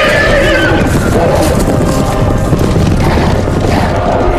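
A horse whinnying, its shrill call falling in pitch and fading about a second in, over loud orchestral film score with deep booms.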